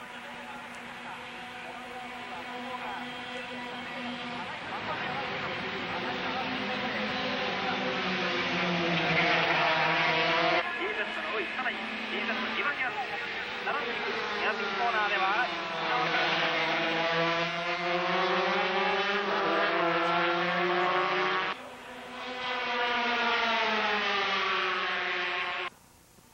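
A group of 125cc two-stroke single-cylinder Grand Prix race motorcycles (Honda RS125R and Yamaha TZ125) running at high revs, their high-pitched engine notes rising and falling together as they accelerate and shift gears. The sound builds over the first ten seconds, and its character changes abruptly about ten and twenty-one seconds in.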